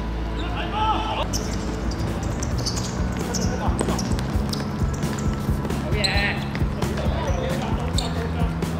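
Live sound of a seven-a-side football game on a hard court: the ball being kicked and feet hitting the surface in short sharp thuds, with players calling out, over a steady low hum.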